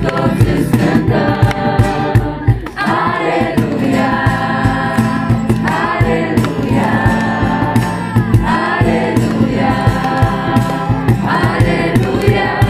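A group of voices singing a worship song over a steady beat, long held chords that change every second or two.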